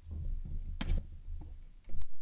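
Microphone handling noise: a low rumble, then several sharp knocks and clicks as a live microphone is adjusted and handled, with a louder knock near the end.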